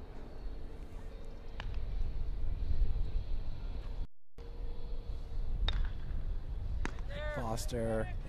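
Low, steady outdoor background rumble on the broadcast microphone, with a few faint clicks and a brief total dropout about four seconds in. A voice starts speaking near the end.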